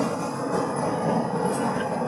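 Steady background noise in a presentation hall: an even, unbroken hiss-like hum with no speech and no distinct events.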